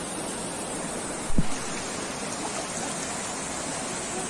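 Steady rushing of a fast mountain stream. A single low thump about a second and a half in is the loudest sound.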